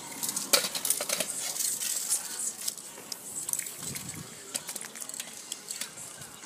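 Aerosol spray-paint cans in use: short hissing spray bursts with sharp metallic clicks and clinks of the cans.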